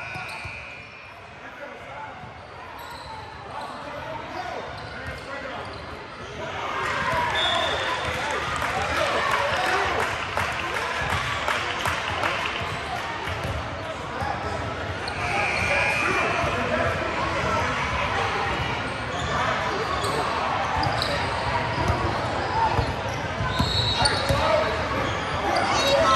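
Basketball bouncing on a hardwood gym floor during play, over a hubbub of players' and spectators' voices echoing in a large gym. The noise of play grows louder about six and a half seconds in.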